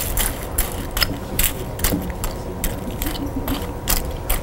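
Loud chewing of crunchy food close to the microphone: a steady run of sharp crunches, about two and a half a second.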